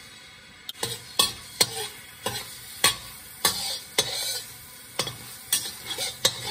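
A metal spoon clinking sharply about ten times, roughly every half second, as paste is scooped from a glass jar into a hot wok. A hiss of sizzling swells between the clinks.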